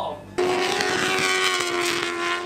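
Kawasaki superbike's inline-four race engine holding a steady high-revving note, which cuts off suddenly just after the end. It is running a test fuelling and ignition setup that the rider says makes it choke at the bottom of the rev range.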